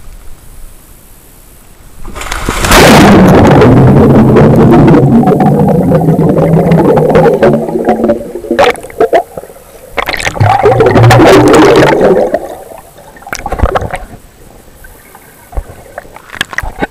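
A splash as the action camera goes under about two seconds in, then loud, muffled underwater bubbling and rushing water heard through the camera's waterproof housing, with a second bubbling burst about ten seconds in.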